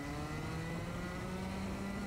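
Rotax 125cc two-stroke kart engine accelerating at a race start, its pitch rising steadily and then levelling off.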